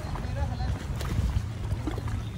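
Wind buffeting the microphone on an open riverbank, a steady low rumble mixed with the wash of the river's waves.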